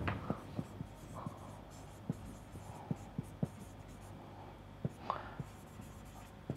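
Marker pen writing on a whiteboard: faint, irregular taps and short strokes as the word "Moreover" and a symbol are written.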